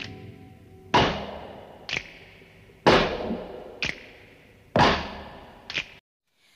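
Cinematic intro sound effects: three heavy impact hits about two seconds apart, each ringing away slowly, with a shorter, sharp hit following each one about a second later.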